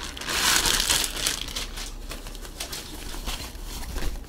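Clear plastic packaging crinkling as it is opened and a fabric drawstring bag is pulled out of it; the crinkling is loudest in the first second or so, then goes on as softer rustling.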